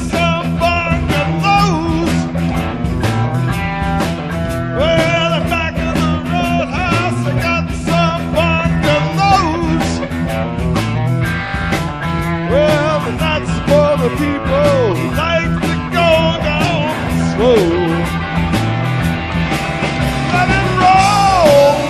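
Live rock band playing, with electric guitars and a drum kit, the lead line sliding between notes.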